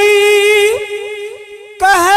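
A man's unaccompanied voice reciting a naat (Urdu devotional poem), holding one long note, whose tail breaks into small wavering turns that fade away. He comes back in strongly on the next phrase near the end.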